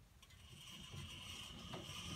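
Faint mechanical rubbing from a portable bandsaw mill, with a steady high whine that starts about a third of a second in and slowly grows louder.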